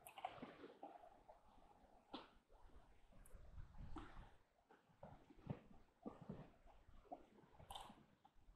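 Near silence, with faint, scattered small clicks and a few soft low thumps from horses moving and mouthing close by.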